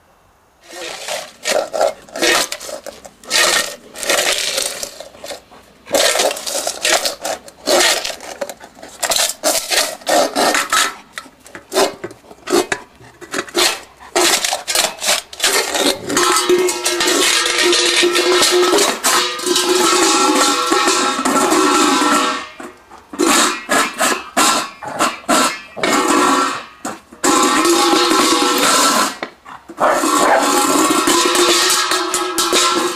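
Stainless steel dog bowl scraping and clattering across asphalt as a giant schnauzer shoves it along with its nose, in uneven runs with short pauses. In the longer runs the bowl rings steadily.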